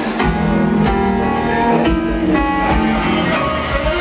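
Live smooth-jazz band playing an instrumental passage: drum kit keeping time under held chords and a plucked guitar line.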